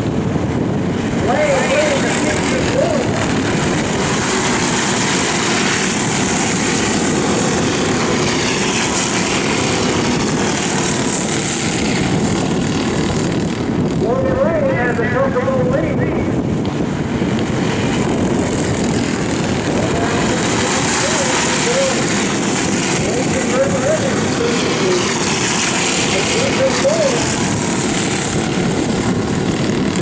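Racing kart engines running hard, their pitch repeatedly dipping and rising again as the karts go round the track.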